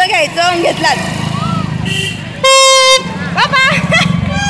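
A horn toots once, loud and about half a second long, about two and a half seconds in, over a low rumble and voices.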